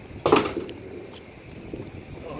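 A single sharp clatter about a quarter second in, with a brief ringing tail, as something is handled on the floor of an enclosed car trailer. A few faint clicks follow.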